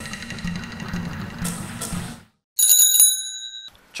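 Bicycle bell rung once: a bright ring that fades away over about a second. Before it comes about two seconds of rough rumbling noise.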